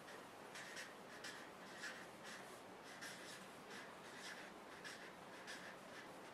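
Felt-tip marker writing on flip-chart paper: a faint run of short scratching strokes, a few per second, as letters are drawn.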